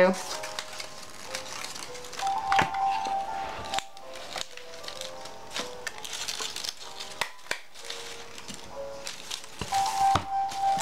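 Paper rustling and crinkling as a printer-paper snowflake is handled, with a few sharp clicks from a desktop stapler being pressed through the paper. Soft background music with held notes plays underneath.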